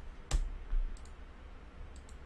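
Clicks from a computer mouse and keyboard while code is being edited: one sharp click about a third of a second in, then a dull low thump and a faint tick near the one-second mark.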